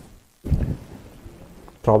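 A short low rumble, loud at its onset about half a second in, right after a brief dropout to silence; then faint room noise, and a man starts speaking near the end.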